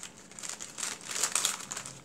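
Small glassine paper bags crinkling irregularly as they are handled in the hands.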